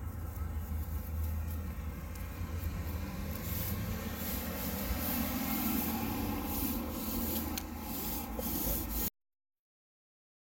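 Braided rope being worked by hand into a knot, with light rubbing and scraping over a steady low outdoor rumble. The sound cuts off abruptly about nine seconds in.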